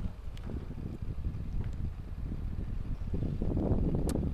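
Wind buffeting the camera microphone, giving a low, uneven rumble.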